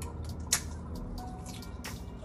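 Two sharp clicks from her hands working at the counter, the first about half a second in and loudest, the second near the end, over faint background music.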